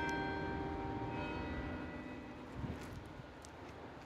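Church bells ringing: several long, steady tones that slowly fade, with a fresh strike about a second in.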